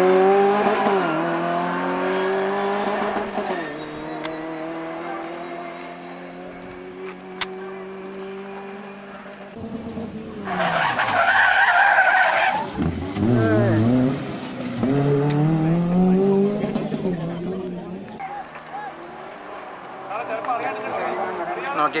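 Maruti Suzuki Gypsy rally cars' four-cylinder petrol engines revving hard, the pitch climbing and dropping with each gear change and lift of the throttle. About halfway through, a car slides through a corner with a brief screech of tyres and then accelerates hard away.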